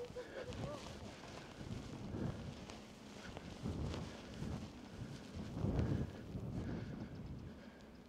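Wind gusting across the microphone, a low rumble that swells and fades several times.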